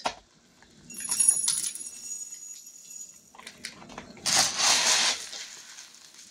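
A dry rice and broken-vermicelli mix is scooped with a plastic measuring cup and poured into a glass mason jar. A light rattle of dry grains comes about a second in, and a louder rushing rattle about four seconds in.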